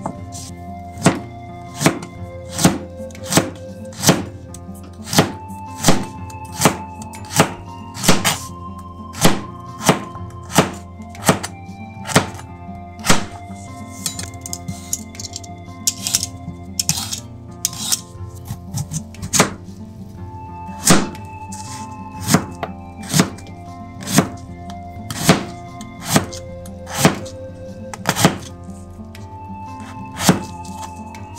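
Kitchen knife chopping carrot and daikon radish on a plastic cutting board: sharp knocks of the blade against the board, about one a second, over background music.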